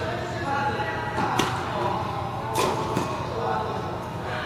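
Tennis ball being struck and bouncing during a rally on an indoor court: two sharp pops a little over a second apart, with background chatter from people nearby.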